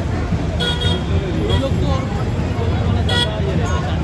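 Street procession din: crowd voices over a steady low rumble of traffic. Two brief toots come about half a second in and again about three seconds in.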